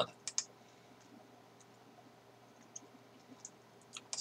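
A few faint computer-mouse clicks while browsing web pages: two quick clicks just after the start, then a few fainter ones near the end, in an otherwise quiet room.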